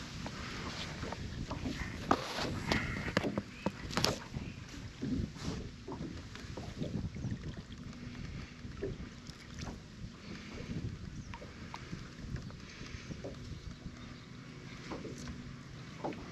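Water sloshing and splashing at the side of a boat as a bass is let go, with irregular small knocks and clicks from handling on the boat and faint wind on the microphone.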